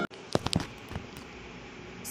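A few sharp clicks in the first half-second, then a faint steady hiss.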